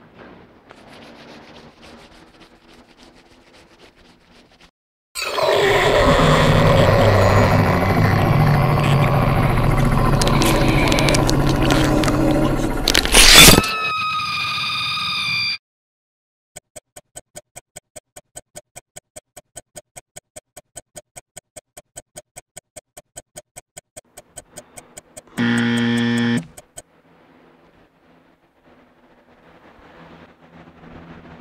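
A loud burst of music that ends on a crash and a short held tone. Then a clock ticking about four times a second for some eight seconds, cut off by a short buzz about a second long.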